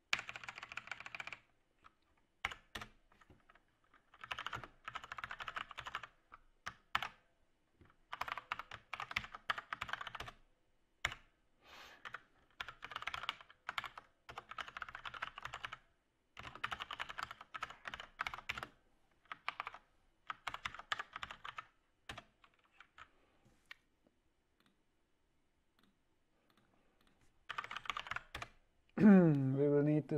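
Computer keyboard typing in bursts of rapid keystrokes with short pauses between them, stopping for a few seconds near the end.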